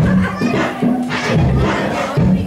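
Many children's voices shouting and calling out together over music playing.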